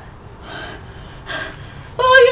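A girl's gasping, sobbing breaths between bouts of staged crying: two short breathy gasps, about half a second in and again about a second and a half in.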